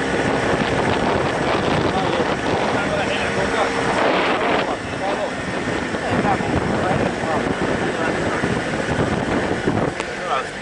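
Wind rushing over the microphone and road noise from a moving car, with indistinct voices in the mix.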